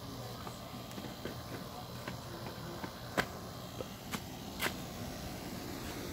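A few sharp clicks or taps over a steady background hiss, the two loudest about three and four and a half seconds in.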